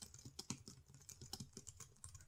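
Computer keyboard typing: a quick, faint run of keystrokes as a short phrase is typed.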